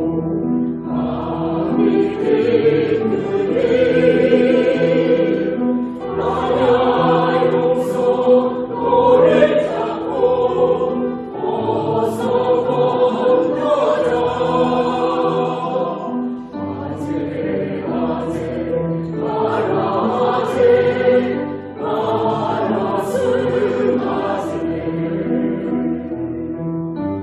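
Mixed choir of men and women singing a slow Korean Buddhist hymn in Korean, in phrases with brief breaths between them.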